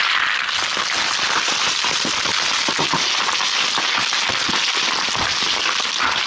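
Loose scree stones clattering and grinding as a hiker slides down a rocky slope on his seat and knocks rocks loose, a dense run of small irregular clicks over a steady hiss.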